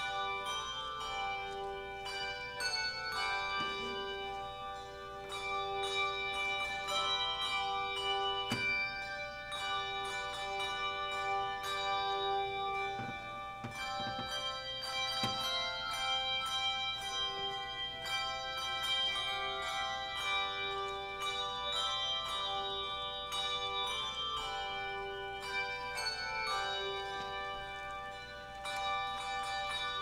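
Handbell choir playing a tune: struck handbells giving overlapping chords and melody notes that ring on and blend.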